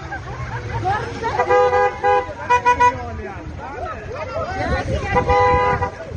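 Car horn honking: a run of short honks from about a second and a half in, then a longer honk near the end, over people's raised voices in the street.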